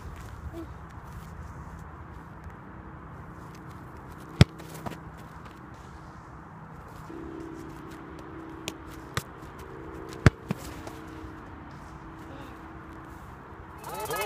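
A leather-style football being juggled: a handful of sharp thuds of the ball against foot and knee, the loudest about four seconds in and a couple more around nine and ten seconds in, over steady outdoor background noise. A faint steady hum joins from about halfway through.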